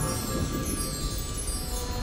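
Cartoon magic-spell sound effect: shimmering chimes cascading downward over background music.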